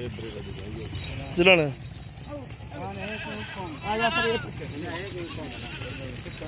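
A herd of Teddy goats bleating: several separate quavering bleats, the loudest about a second and a half in and others between about three and five seconds in.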